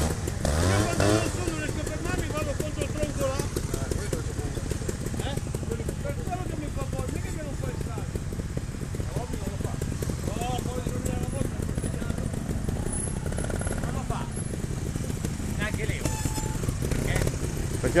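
Trials motorcycle engines running close by, idling with the throttle blipped now and then so the revs rise and fall.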